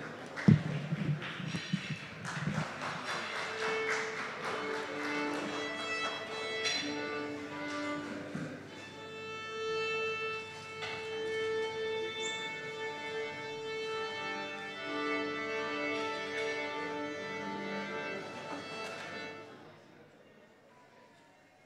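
A small string orchestra of violins, viola, cellos and double bass tuning up: overlapping long bowed notes that stop together just before the end. Light applause dies away in the first few seconds.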